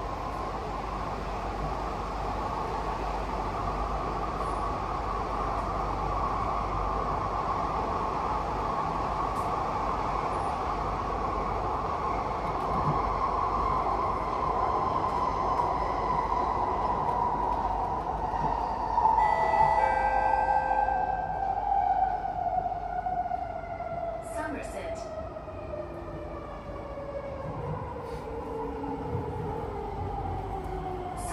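Singapore MRT train running, heard from inside the carriage, with a steady electric motor whine over the rumble of the ride. About two-thirds of the way through, a brief cluster of higher steady tones sounds, and the whine falls steadily in pitch as the train slows for the next station.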